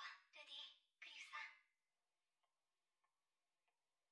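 A short line of anime character dialogue, faint and in Japanese, lasting under two seconds, followed by near silence with a few faint clicks.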